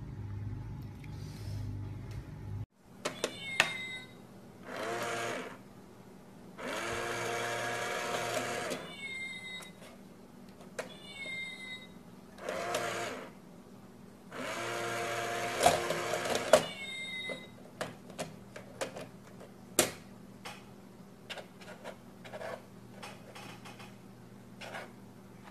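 A small electric motor in a wooden box whirring in four runs of one to two seconds each, separated by sharp clicks and knocks and a few short high squeaks.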